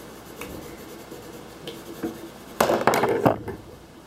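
Felt-tip marker scratching over paper as a drawing is coloured in. About two-thirds of the way through comes a short cluster of louder clicks and knocks.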